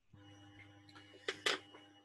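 Faint steady electrical hum on an open video-call microphone line, with two short clicks about a second and a half in.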